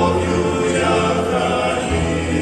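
Men's choir singing a Christian song in several voice parts, the chords held steadily.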